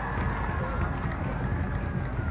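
Outdoor stadium background: a steady low rumble on the microphone with faint voices in the distance.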